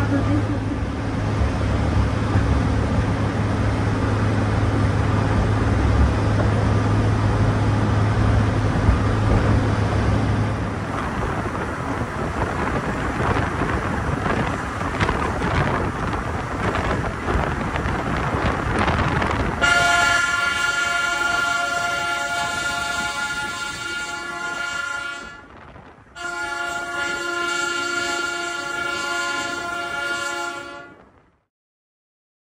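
Mount Washington Cog Railway train climbing, with a steady low engine hum and rattling noise from the car that fades to a rougher rumble after about ten seconds. About twenty seconds in, a steady multi-tone sound sets in suddenly. It holds for about five seconds, breaks off briefly and resumes.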